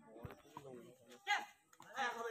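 Players' voices calling out during a cricket game, with one short loud shout a little past halfway through. There is a single knock near the start.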